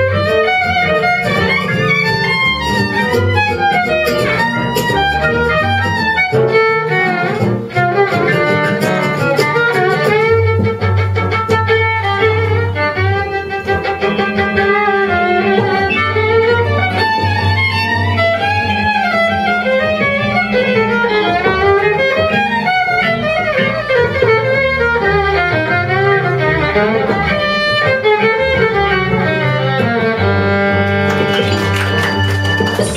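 Live jazz ensemble playing an instrumental passage with no vocals: a bowed violin carries the lead line over acoustic guitar, walking double bass and keyboards.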